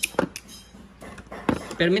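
Metal pliers clicking and knocking against other tools and the hard plastic tool case as they are picked up: several short, sharp clicks.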